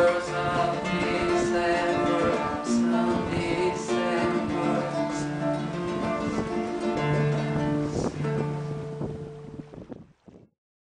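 Nylon-string classical guitar playing the instrumental close of a song, with held low notes under the picked melody; the music fades out in the last second.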